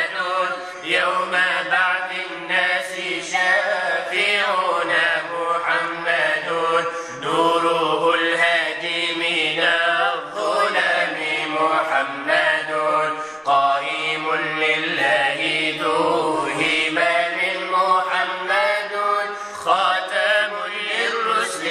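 Arabic nasheed in praise of the Prophet Muhammad: a voice chanting long, ornamented melodic lines over a steady low drone, with no instruments.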